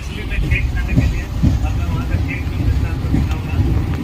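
Passenger train running, heard from inside the carriage: a heavy low rumble with a few short knocks.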